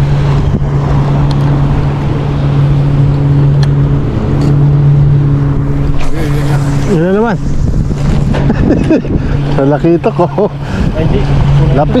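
A steady low motor hum, with wind on the microphone, and a man's short drawn-out calls about seven seconds in and again near the end.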